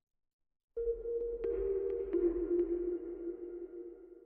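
Electronic logo sting: after a short silence, a deep low boom and a held synth tone start suddenly, with a few light ticks over them, then begin to fade.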